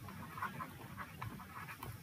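Faint, light ticks of a stylus on a tablet screen as a word is handwritten, over a low steady hiss.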